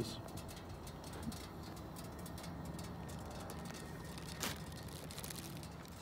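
Quiet, steady background hiss in a drifting hot air balloon basket, with the burner not firing, and one faint click about four and a half seconds in.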